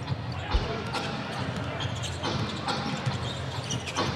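Basketball dribbling on a hardwood arena court, a few thumps of the ball, over a steady murmur of crowd noise in the arena.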